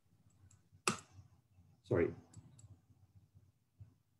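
Computer mouse clicks while changing slides: one sharp click about a second in, with a few faint ticks around it.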